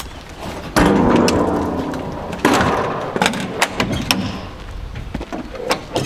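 Metal side door of a horsebox being shut: two loud bangs that rattle and ring off, about a second apart and then again, followed by several sharp clicks as its latches are fastened.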